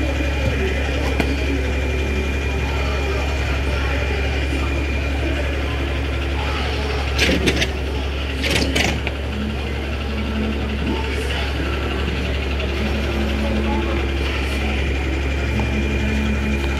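An engine runs steadily with a low hum, with voices in the background. A few sharp knocks come about halfway through.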